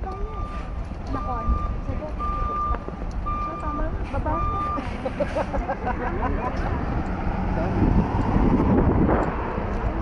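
A coach bus's reversing alarm beeping about once a second, five steady beeps that stop about five seconds in, over the low running of the bus's engine.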